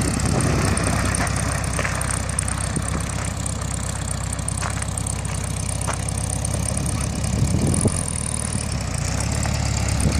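1973 Volkswagen Beetle's air-cooled flat-four engine running as the car drives slowly, a steady low pulsing that gets briefly louder about eight seconds in.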